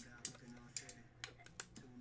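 Light plastic clicks and taps from a clear magnetic card holder being handled and pressed shut, about half a dozen in two seconds.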